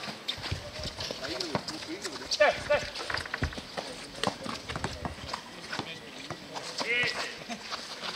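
Footsteps and ball bounces of a streetball game: a run of short, sharp knocks on the court surface, with players calling out over them.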